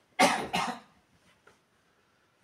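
A man coughing twice in quick succession, the second cough a little weaker than the first.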